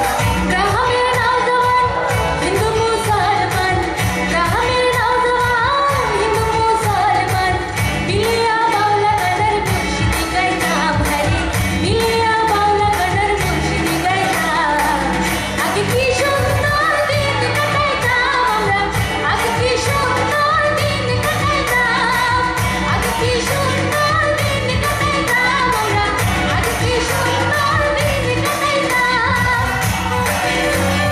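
A woman singing into a microphone over a live amplified band of electric guitars, bass and keyboard, playing a pop song with a steady beat.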